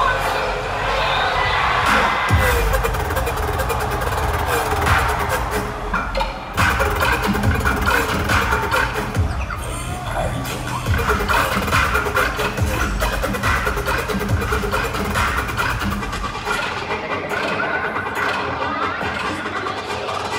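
Heavy dubstep played loud through a concert sound system and heard from the crowd, with a pulsing sub-bass line under bending, warped synth lines. The bass drops out near the end.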